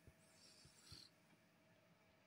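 Near silence: a faint rustle of a hand scratching a cat's fur in roughly the first second, with a few soft low knocks.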